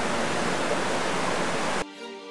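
Steady rush of flowing river water, cutting off suddenly near the end, where soft music begins.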